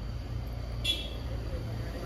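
Car engine idling with a low steady hum, and a brief high-pitched tone about a second in.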